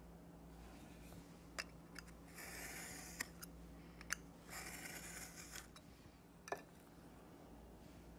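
Craft knife drawn along a ruler, slicing through stiff template board in two strokes of about a second each, with a few sharp clicks of the blade and ruler between them.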